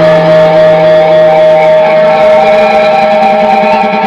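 Live rock band's electric guitars holding a sustained, droning chord, with hardly any drumming. A lower held note drops out about halfway through while the higher tone rings on.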